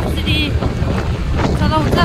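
Steady low rumble of a car driving, with wind buffeting the microphone.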